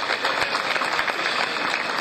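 Crowd applauding: dense, steady clapping from many hands.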